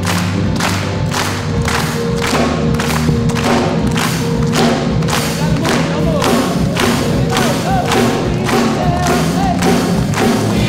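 A youth choir clapping a steady beat, a little over two claps a second, over held low chords. From about six seconds in, voices begin to sing wavering lines over the clapping.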